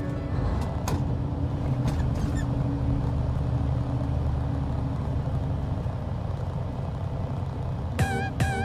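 Semi truck driving down the road, heard from inside the cab: a steady low rumble of diesel engine and road noise, with a few faint clicks in the first couple of seconds.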